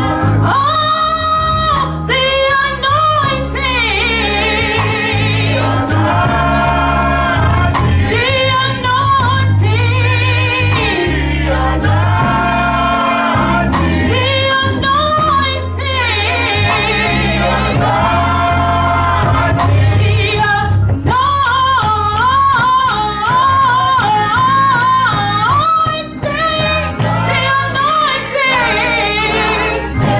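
Gospel choir and a female lead singer on a microphone singing with vibrato, backed by a band: steady bass notes underneath and drums with regular cymbal ticks.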